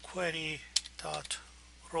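Computer keyboard typing: a few separate keystrokes as a line of code is typed.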